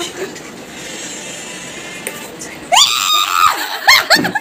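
A low steady hiss, then about three-quarters of the way in a person's loud, high-pitched scream that rises and falls, with a second shorter cry just at the end.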